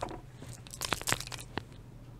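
Chalk and eraser being handled at a chalkboard: a knock, then a short run of scratchy, crunchy scrapes about a second in and a few light clicks.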